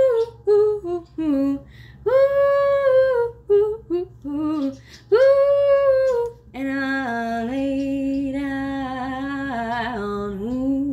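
A woman singing a cappella without words: long held "ooh" notes with short notes in between, then, about two-thirds in, a lower hummed note held steadily.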